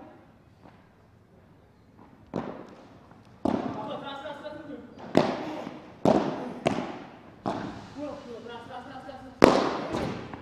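A padel rally: a series of sharp pops as the ball is struck back and forth with solid padel rackets, about seven hits spaced a second or so apart, each ringing on in the hall. The loudest hit comes near the end.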